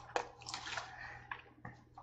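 Faint wet chewing of a mouthful of burger, with a few small squelchy lip smacks and clicks, picked up close by a headset microphone.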